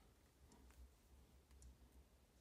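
A few faint clicks of small plastic Lego pieces being fitted together by hand, in near silence.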